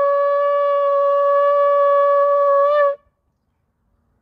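A shofar blown in one long, steady held note that bends slightly upward and cuts off about three seconds in.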